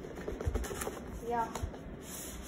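Cardboard box being pulled open by hand: a few light scrapes and clicks of card rubbing on card, with a short spoken "yeah" partway through.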